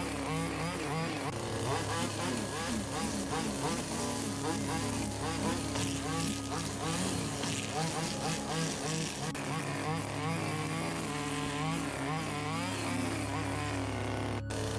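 Petrol string trimmer running steadily and cutting grass, its whine wavering up and down again and again.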